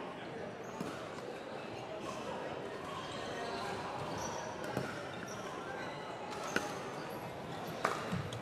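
Busy indoor sports-hall ambience: a steady hum of voices with a few sharp pops of pickleball paddles striking balls on neighbouring courts, the loudest one near the end.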